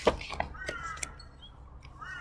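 A crow giving one drawn-out caw about half a second in.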